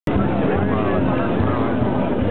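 Many voices talking and calling at once close around, the babble of a packed crowd, over a steady low rumble.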